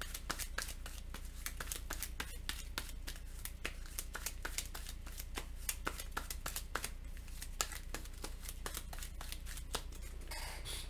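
Board game cards and cardboard pieces being handled on a tabletop: many light, irregular clicks and taps, over a low steady hum.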